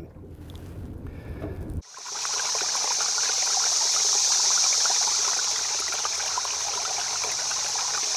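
A faint low rumble for about two seconds, then a sudden change to a steady hiss of running water with small scattered crackles.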